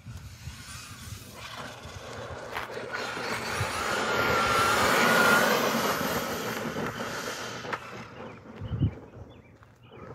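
Traxxas Hoss RC monster truck's brushless VXL electric motor whining, with tyres hissing on asphalt. The sound swells as the truck drives past, is loudest about halfway through, then fades as it goes away. A short low thump comes near the end.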